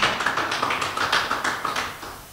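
Applause: many hands clapping in a dense patter that fades gradually toward the end, answering a call to clap.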